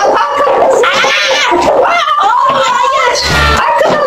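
Excited shouting and high-pitched squealing from girls and a woman playing a bottle-flip game, with a dull thump a little over three seconds in.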